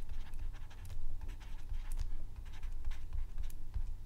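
Stylus scratching and tapping on a tablet's writing surface while handwriting a line of text, in short irregular strokes over a low steady hum.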